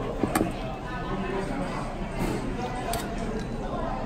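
Restaurant background chatter, with two sharp clinks of a metal ladle against a stainless steel soup pot: one just after the start and one near three seconds in.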